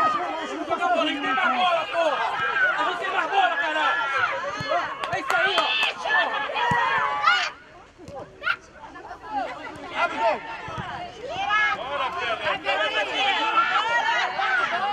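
Many voices calling and shouting over one another around a youth football pitch, with a short drop in the voices about halfway through.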